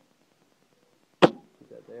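A single sharp clack about a second in: a metal fingerboard rail set down on its posts on a glass tabletop.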